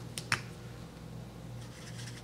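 Two short, sharp clicks in quick succession, the second louder, over a steady low hum.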